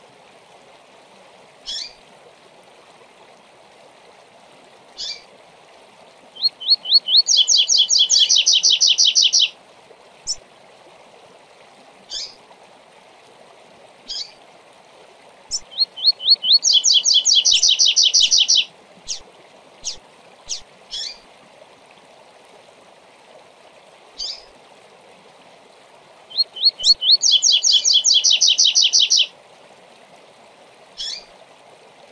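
Male double-collared seedeater (coleiro) singing its 'tui tui zel zel zel' song three times. Each song is a few separate notes leading into a fast trill about three seconds long, and short single call notes fall between the songs. A steady stream runs underneath.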